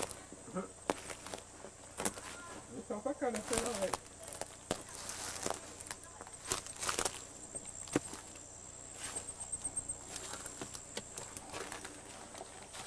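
Footsteps through dry grass and dead leaves, with irregular crackles and snaps, and faint voices in the background about three to four seconds in.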